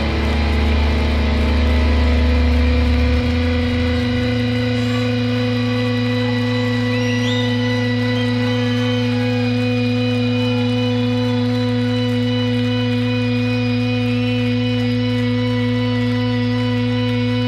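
Sustained droning chord from a live rock band's amplified instruments: several steady tones held with no beat or rhythm. About three to four seconds in the deepest bass note gives way to a somewhat higher one, and the chord then holds unchanged.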